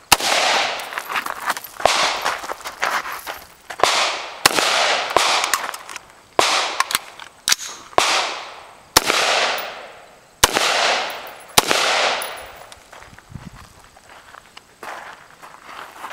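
AR-style rifle firing about a dozen single shots at an irregular pace, each sharp crack trailing off in a long echo, with the shooting stopping about twelve seconds in.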